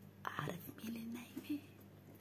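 A person whispering softly in short bursts.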